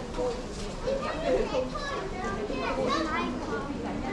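Indistinct chatter of shoppers' voices, with children's higher voices among them, in a large indoor hall.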